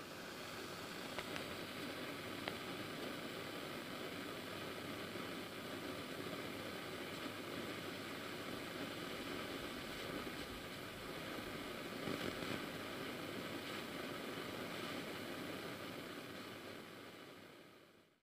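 Steady hiss and static with a few faint clicks and pops scattered through it, fading away near the end.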